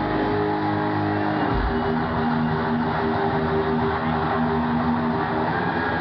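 Electric guitars holding long sustained notes over a low drone, loud through a concert sound system, shifting to new held notes about a second and a half in.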